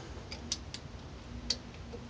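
A few light metallic clicks, about four, spaced unevenly, from a milling machine's rotary table and its aluminium workpiece being handled.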